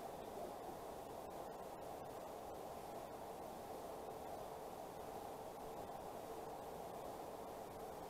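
Faint, steady background hiss of room noise, with no distinct tool clicks or other events standing out.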